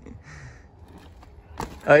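Mountain bike touching down on a dirt road after a small bunny hop: one short knock about a second and a half in, over a faint outdoor background.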